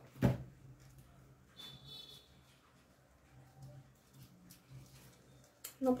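Faint rustling of ribbon and a metal hair clip being handled by hand, with one sharp knock about a third of a second in.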